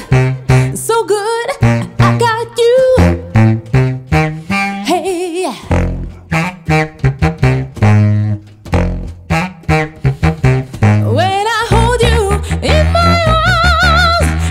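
Tubax, a contrabass saxophone, playing a low rhythmic bass line, with a higher melody line in vibrato above it.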